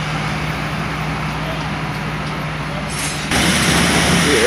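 Heavy diesel engine idling steadily amid street traffic noise. A little past three seconds in, the sound changes abruptly to louder excavator work, its bucket scraping the ground.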